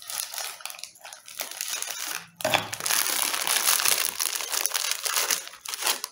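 Plastic cracker packet crinkling and rustling as round crackers are taken out of it, lighter at first and then louder and continuous from a little before halfway.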